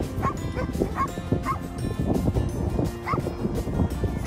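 A dog barking in short high yips: a quick run of them in the first second and a half, and another about three seconds in.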